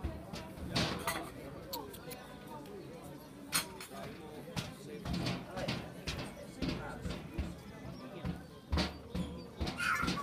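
Indistinct background voices of people talking, with scattered sharp knocks and clicks throughout.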